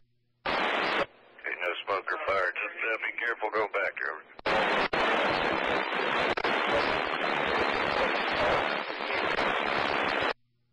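Scanner radio tuned to the railroad's channel: a short burst of loud static, a faint garbled voice transmission, then several seconds of loud steady static hiss.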